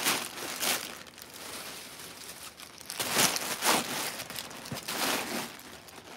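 Crinkly wrapping being crumpled and pushed into a tote bag by hand, rustling in a few bursts, the loudest about three seconds in.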